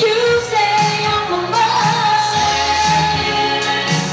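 Live R&B duet: a woman and a man singing into handheld microphones over a band, with one long held note in the middle.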